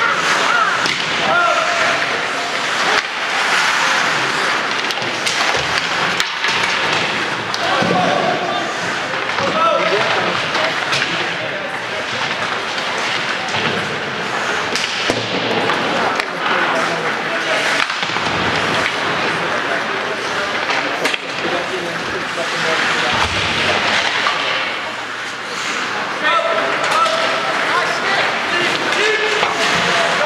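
Ice hockey play in a large arena: skates scraping on the ice, with stick and puck knocks and thuds against the boards, and players' voices calling out now and then.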